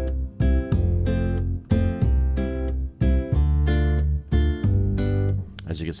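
Sampled acoustic upright bass from the UJAM Virtual Bassist Mellow plug-in playing a preset phrase of plucked low notes, two or three a second.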